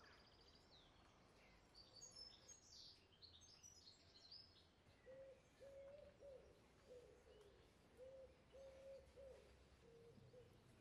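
Faint birdsong outdoors: a small bird's quick high chirps in the first half, then a low cooing call repeated in short phrases from about halfway through.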